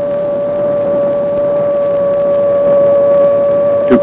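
AN/PPS-5 ground surveillance radar's audio target signal, a single steady mid-pitched tone, heard as the range gate sits on a moving target.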